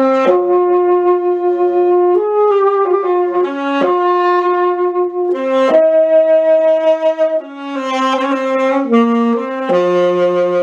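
A Chinese-made C melody (C tenor) saxophone played solo: a slow melody of sustained notes, with a brief pause for breath a little over seven seconds in.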